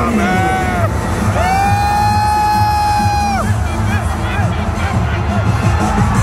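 Entrance music over an arena's sound system: a heavy, steady bass beat under two long held notes, a short one near the start and a longer one of about two seconds in the middle. A crowd cheers underneath.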